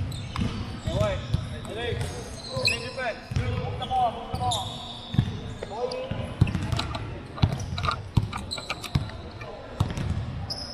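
Basketball shoes squeaking on a hardwood court, with a basketball bouncing in irregular thuds that come mostly in the second half.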